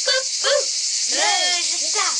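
A girl's voice: a short spoken phrase, then a longer sing-song phrase with rising and falling pitch, over a steady high-pitched hiss.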